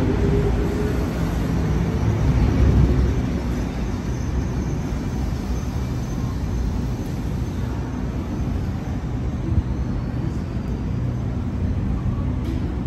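Double-deck electric suburban train departing from the platform, its wheels and motors rumbling. The rumble is loudest in the first few seconds, then eases as the train runs off into the tunnel.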